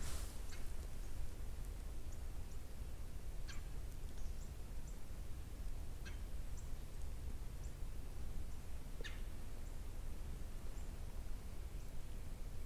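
A few faint, short bird calls, spaced a few seconds apart, over a steady low rumble of wind and movement.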